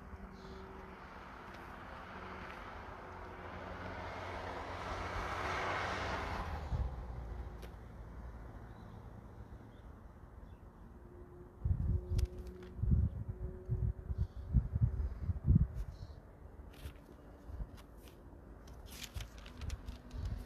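Quiet outdoor ambience: the noise of a passing vehicle swells and fades over several seconds. Later come a few low, rumbling thumps.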